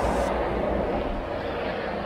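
Motorcycle under way: a steady rush of wind and road noise with low engine rumble underneath.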